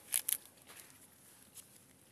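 Two short, sharp crackles close together near the start, followed by faint, scattered rustling and ticks.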